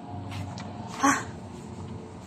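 A young child's short, high yelp about a second in.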